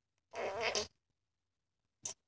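A short blown raspberry, a flutter of air through pursed lips, lasting about half a second.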